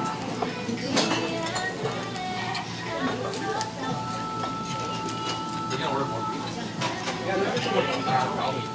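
Busy restaurant sound: background music and voices, with metal spoons and chopsticks clinking against stone bowls every so often.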